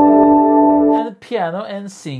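A soft synthesizer piano preset (VPS Avenger software synth) playing a held chord from a keyboard, its notes sustaining evenly until it stops about a second in; a man's voice follows.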